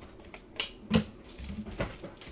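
Trading cards and wrapped packs being handled and set down on a tabletop, giving three sharp taps over the couple of seconds.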